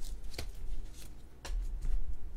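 Trading cards being handled and laid down on a mat: a few brief flicks and slides of card on card and card on mat.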